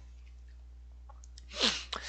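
A low steady hum, then about one and a half seconds in a short breathy sound from a person, lasting under half a second, just before he speaks again.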